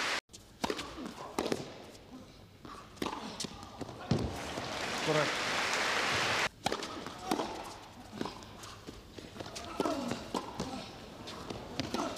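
Indoor tennis arena crowd between points: murmuring and scattered voices with a few sharp knocks, and crowd noise swelling in the middle. The sound drops out briefly twice where the footage is cut.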